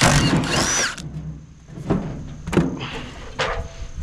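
Cordless impact driver hammering a door hinge bolt loose for about a second, its pitch rising and falling. A few short sharp knocks follow.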